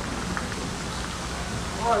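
Fountain water jet splashing steadily into its basin, with a man's voice starting right at the end.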